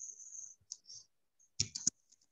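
Computer mouse clicking: three quick, sharp clicks about a second and a half in. A faint high hiss stops about half a second in.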